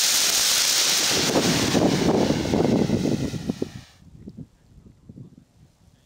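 Small solid-propellant rocket motor firing on a static test stand: a steady rushing roar that tails off and stops about three and a half to four seconds in as the propellant burns out, leaving only faint crackles.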